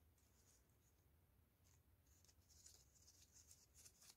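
Near silence, with faint light scratching and rustling in the second half from hands handling a craft-foam (foamiran) petal.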